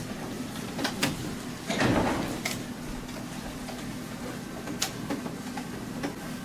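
A stage door opening with a short rumble about two seconds in, and a few scattered knocks and footfalls on a wooden stage as someone walks on, over a steady low hum.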